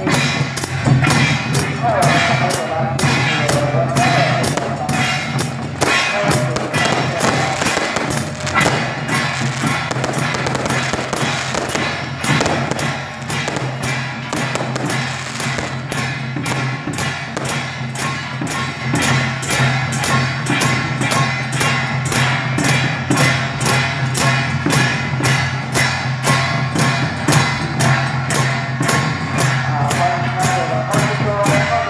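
Procession percussion troupe beating drums and cymbals in a fast, even rhythm of about two strikes a second, over a steady low hum.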